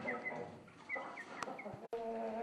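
Young chickens giving a few short, soft high peeps while feeding on a halved pumpkin, with one sharp tap a little past halfway.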